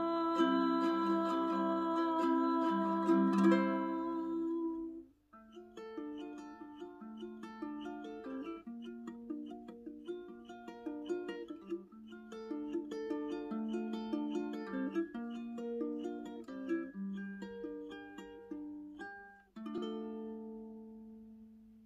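Solo ukulele: a chord rings out for about four seconds and fades, then after a short gap a fingerpicked melody of single notes runs on, with a brief pause near the end.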